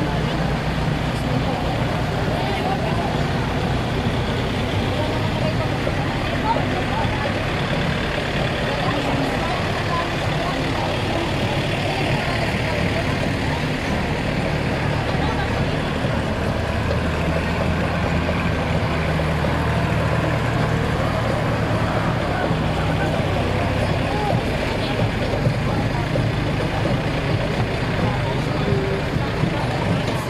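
Several diesel farm tractors running at low speed as they roll past in a slow line, a steady low engine sound, mixed with the voices of a crowd of onlookers.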